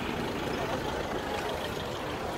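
Steady outdoor rumble and hiss with indistinct voices of people around.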